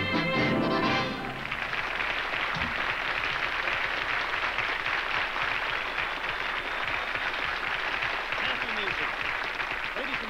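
A polka played on accordion with the band ends on its final chord about a second in, followed by a studio audience applauding steadily. A man begins speaking over the applause near the end.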